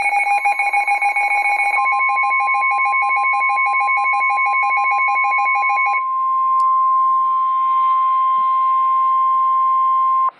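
NOAA Weather Radio's steady 1050 Hz warning alarm tone, the tone that announces a new warning. For the first six seconds the weather alert radios' own rapid pulsing alarm beeps sound over it. The beeping stops about six seconds in, leaving the steady tone alone until it cuts off sharply at the end.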